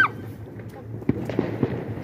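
Fireworks crackling and popping, with three sharp pops between about one and two seconds in.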